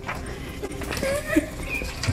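A child running along a carpeted hallway, with irregular footfall thuds and a short high vocal cry about a second in.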